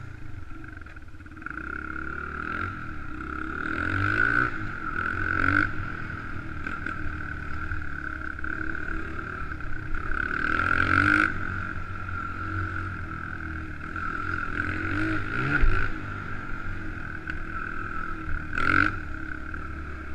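Honda XR100R dirt bike's single-cylinder four-stroke engine running under way, revving up and down repeatedly with the throttle, heard through a helmet-mounted camera.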